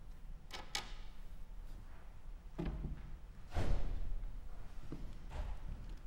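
Wooden knocks and thumps from a fortepiano being opened for playing, its lid raised and propped and its music desk set: two light clicks, then several dull thuds, the loudest a little past halfway.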